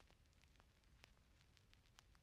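Near silence: a faint low hum with scattered small crackles and clicks.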